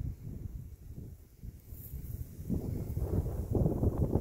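Wind buffeting the microphone: a low, irregular rumble that grows stronger over the last second and a half.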